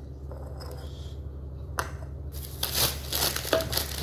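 Glass preserve jars being handled and set down on a hard tabletop: a sharp clack about two seconds in, then a run of rustling and small clicks as more jars are brought out.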